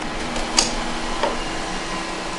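Océ PlotWave 300 wide-format printer running with a steady hum, with a few light ticks, the sharpest about half a second in.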